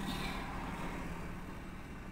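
Steady low vehicle rumble heard from inside a car's cabin, with no distinct events.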